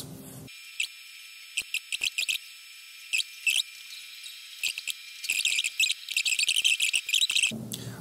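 Sped-up audio of a fast-forwarded screen recording: short, high-pitched chirping clicks, sparse at first and dense in the last two seconds, over a faint steady high tone.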